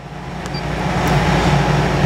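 Background vehicle noise, a low rumble with a broad hiss, growing steadily louder and cutting off suddenly near the end.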